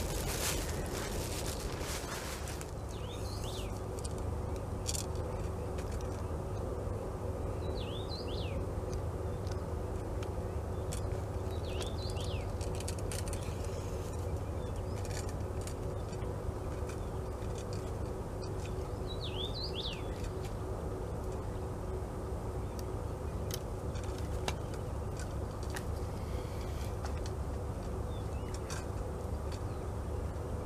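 Small birds' short, high chirps, sounding every few seconds over steady low background noise by a lake. A brief rustle fills the first two seconds or so.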